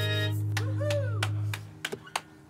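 The band's final chord ringing out on acoustic guitar and keyboard: the higher notes stop early and a low held note fades out about a second and a half in. A few sharp clicks and short gliding sounds follow as it dies away.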